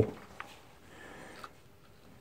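Quiet workshop room tone with faint handling sounds, a small click and a brief soft rustle, as an angle grinder that is not running is lifted off a rubber bench mat.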